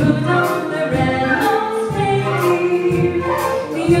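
A female singer with a microphone sings over a live ensemble of brass, saxophones, flutes and violins, with repeating bass notes underneath.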